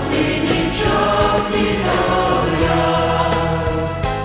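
Mixed choir of men and women singing with musical accompaniment, the voices holding long sustained chords.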